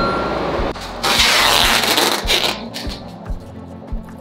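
Background music with a steady beat. Over it, clear packing tape is pulled off its roll in two long screeching strips around a cardboard box: one ends just under a second in, and a louder one runs for about a second and a half starting about a second in.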